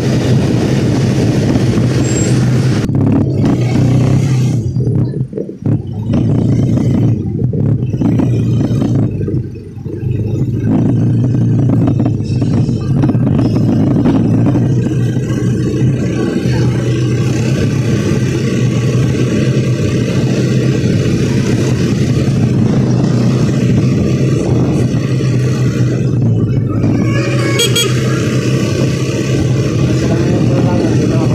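Steady road noise of a moving motorcycle: the engine running under loud wind rush on the microphone, dipping briefly twice.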